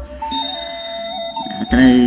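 Background music under a pause in the talk: soft, held electronic tones that step down in pitch. A man's speaking voice returns near the end.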